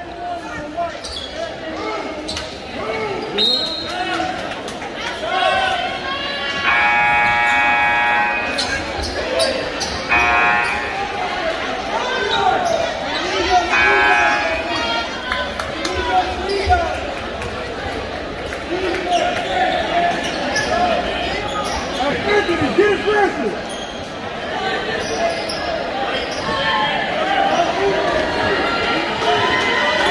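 A basketball bounces on a hardwood gym floor amid crowd talk and shouts echoing in a large gymnasium. Three short bursts of a held, pitched sound cut through about 7, 10 and 14 seconds in.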